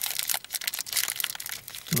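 Plastic wrapper of a Cadbury Snack shortcake biscuit crinkling as it is handled, a run of quick, irregular crackles.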